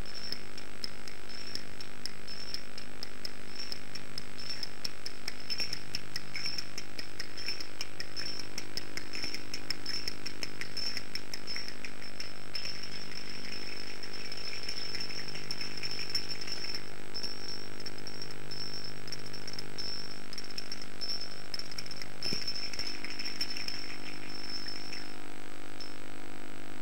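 Belly-dance music from a violin ensemble, heard through a badly degraded recording: held chords that change every few seconds, under a steady high whine and dense crackle.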